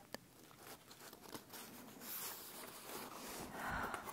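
Soft rustle of a paper book page being handled and turned, building over the last two seconds, after a single light click near the start.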